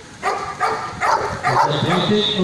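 A security dog barking, several short barks in the first second and a half, followed by a man's voice.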